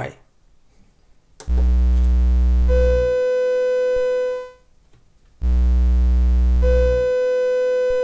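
Lyra-8 synthesizer voices stepped by an Ornament-8 sequencer loop: about a second and a half of silence, then two sustained tones together, a low drone and a higher one. The low drone cuts off and the higher tone carries on alone before stopping, and the cycle starts again about four seconds after the first. The silent step is cell 4 in negative mode muting voice 4; then voices 5 and 4 sound together, and then voice 4 alone.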